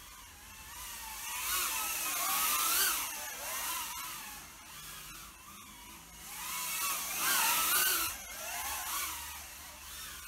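Mobula 8 micro FPV drone's 1103 brushless motors and small propellers whining in flight. The pitch wavers up and down as it manoeuvres, and it grows loud twice.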